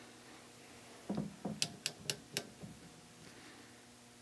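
Rotary selector knobs of an Eico 1171 resistance decade box being turned, a few faint sharp clicks as the switches move through their detent positions near the middle, with soft handling sounds just before.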